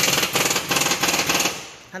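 Pneumatic impact wrench rattling rapidly, stopping about three quarters of the way through.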